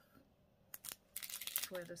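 Clear plastic sleeve around a cleaning cloth crinkling as it is handled. Two small clicks come first, then about half a second of crackling a little past the middle.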